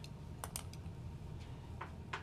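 A handful of separate keystrokes on a laptop keyboard, irregularly spaced, over a steady low hum.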